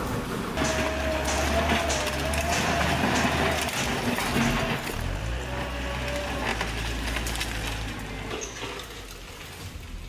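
A compact loader's engine running steadily while it clears rubble, with broken concrete and debris crunching and clinking. A wavering whine comes and goes. The sound grows quieter near the end.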